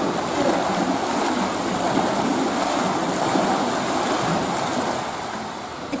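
Pool water splashing and churning as a person standing in it kicks one leg forward and back and pulls the arms through the water, easing off slightly near the end.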